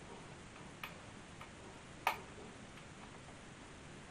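A small screwdriver working a countersunk machine screw into the Marconi CR100 receiver's metal chassis: a few faint metallic ticks, with one sharper click about two seconds in.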